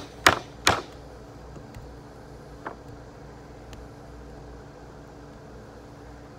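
Claw hammer striking an old weathered board to knock out its rusted nails: a few sharp blows in the first second, then a lighter knock almost three seconds in, over a steady low hum.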